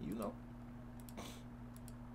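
A few faint clicks at a computer: one about a second in and a quick pair near the end, over a low steady hum.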